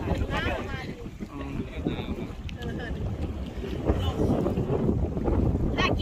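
Wind buffeting the microphone, a steady low rumble, with people talking faintly in the background.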